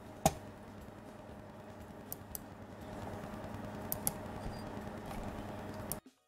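Clicks at a computer, mouse and keys: one sharp click just after the start, then a few fainter clicks, over a steady low hum.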